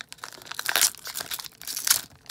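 Foil hockey card pack wrapper being torn open and crinkled by hand, a crackly rustle with louder bursts about two-thirds of a second in and again near the end.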